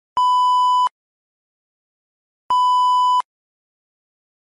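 Two identical electronic beeps of a single steady pitch, each under a second long and about two and a half seconds apart, with silence between them.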